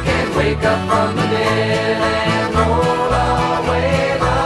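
Country-rock band music: a steady, stepping bass line under plucked strings and other instruments.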